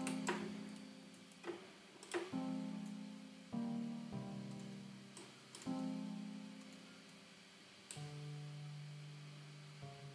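Three-note chords played back from the Xpand!2 software instrument, each sounding suddenly and fading away, a new chord every one to two seconds. Sharp clicks of a computer mouse fall between them as the notes are edited.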